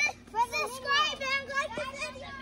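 Young children's high voices chattering and calling out, over a steady low hum from the inflatable decorations' blower fans.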